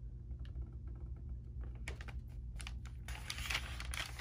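Light clicks and a brief rustle from handling the paper pages of a notebook, over a steady low hum.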